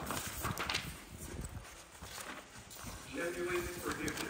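Coloured pencils clicking and rattling against each other as a hand rummages through a zippered pencil case, a cluster of light clicks in the first second and a few scattered taps after. A voice speaks briefly near the end.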